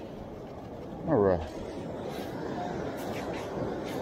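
A man's short vocal sound falling steeply in pitch, about a second in, over a steady rushing background of wind and surf on the open beach.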